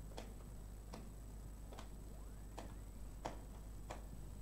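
Faint ticks at a steady pace, about one every 0.8 seconds, over a low steady hum.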